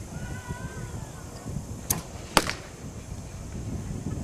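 Two sharp knocks about half a second apart, the second louder, over a steady low background rumble.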